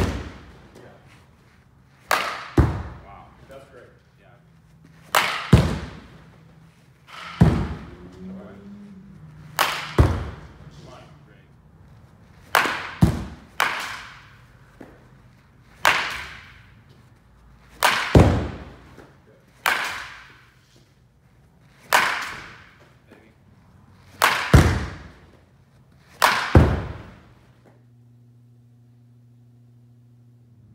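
Baseball bat striking balls in a batting cage: a sharp crack about every two seconds, about a dozen in all, each dying away quickly. Some are followed closely by a second knock.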